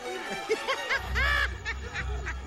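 Several short snickering laughs from animated characters, over orchestral film score; a deep low note in the music comes in about a second in.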